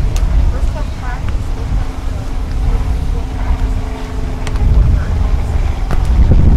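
Wind buffeting the microphone in a steady low rumble, with faint distant voices and a faint steady hum in the middle. Two sharp slaps of a volleyball being hit stand out, just after the start and again later on.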